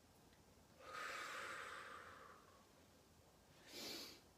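A person's slow, deliberate breathing during a breathing exercise. A long breath runs for about a second and a half starting about a second in, then a short, sharp breath comes near the end.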